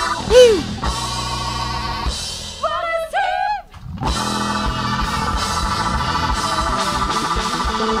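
Live band playing: electric bass, electric guitar, saxophone and drum kit, with a short drop in level a little past halfway before the band comes back in with held notes.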